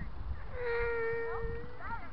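A child's long, steady shout held for about a second, its pitch breaking upward as it ends, followed by shorter children's calls near the end, over a low rumble.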